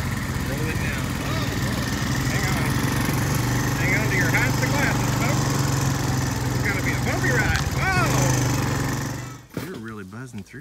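ATV engine running steadily while riding along a rough dirt trail, a continuous low drone that cuts off abruptly about a second before the end.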